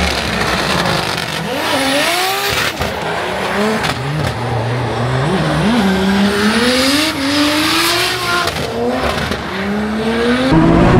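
Drift car engine revving up and down several times, with tyre squeal under it.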